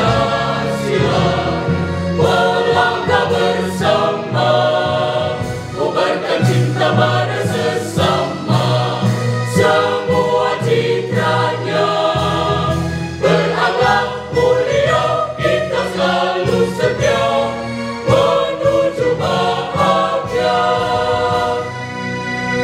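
A mixed choir of women and men singing a song in Indonesian in several parts, the voices moving together phrase by phrase.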